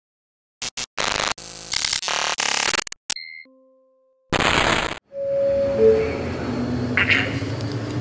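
Electronic sound effects: a couple of seconds of chopped, glitchy static bursts, then a brief bright electronic chime that fades out. After that a short burst of noise, and from about five seconds in a steady hum with a tone that slowly rises in pitch.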